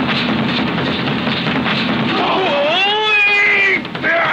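A busy film soundtrack, then, a little over two seconds in, a long drawn-out human yell that wavers and slides in pitch for about a second and a half before cutting off near the end.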